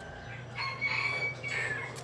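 A rooster crowing once: a single call of about a second and a half that holds its pitch and drops away at the end.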